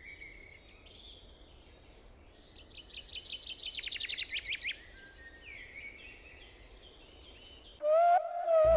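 Birds chirping and singing over faint outdoor hiss, with a fast trill of rapid notes in the middle.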